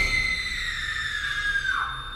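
A long, high-pitched scream, held on one note and sliding slowly down in pitch before it breaks off shortly before the end.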